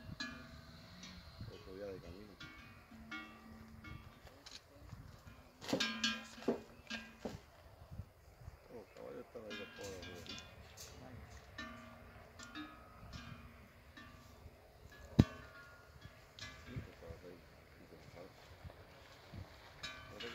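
Cattle bells clanking irregularly as the cattle move and feed, with faint voices talking in the background. A single sharp knock about fifteen seconds in is the loudest sound.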